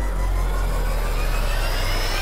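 Intro transition sound effect: a deep, steady rumble under a rising whoosh whose pitch climbs steadily, swelling in just before and cutting off a little after the logo appears.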